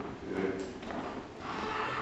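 People shuffling and stirring as they stand, with faint indistinct voices, clothing rustle and a few light knocks in a small, echoing room.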